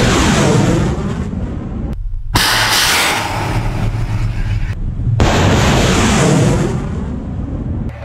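Kh-35 Uran anti-ship cruise missiles launching from a frigate's deck: the loud roar of the solid-fuel rocket booster. The roar cuts off abruptly about two seconds in and again about five seconds in, each time returning just as loud.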